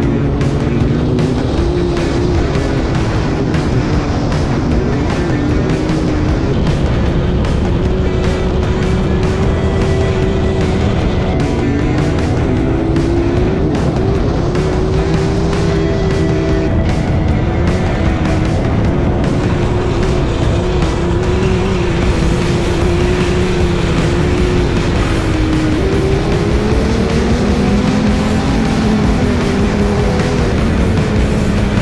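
Sandrail engine running at speed over sand dunes, its pitch rising and falling with the throttle, under background music.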